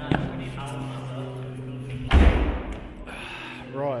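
A single heavy thud about two seconds in, the handheld camera being set down, heard as a bump on its own microphone, over a low steady hum.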